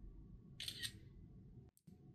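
iPad screenshot shutter sound: one short, crisp simulated camera-shutter click a little over half a second in, confirming that a screenshot was taken.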